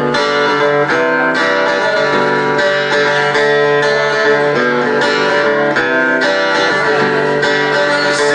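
Electric guitar strumming a chord progression, with the chords changing every second or so.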